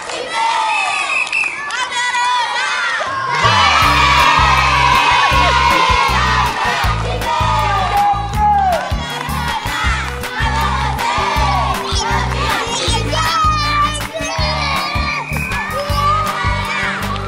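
A group of children shouting and cheering excitedly, many high voices at once. About three seconds in, music with a heavy, pulsing bass beat comes in under the shouting.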